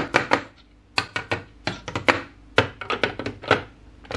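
Large plastic building blocks clacking and clicking as they are handled and pressed together: an irregular run of sharp, hard clicks, several in quick clusters.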